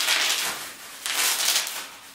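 Clear plastic packaging bag rustling and crinkling as it is shaken by hand, in two bursts: one at the start and another about a second in.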